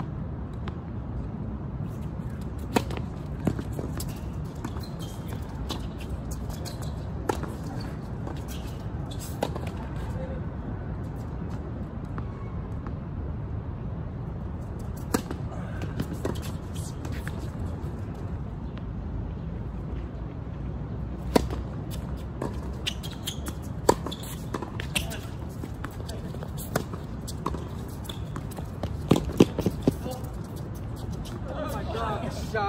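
Tennis balls struck by racquets and bouncing on a hard court: scattered sharp pops in short clusters over several points, with a steady low background rumble.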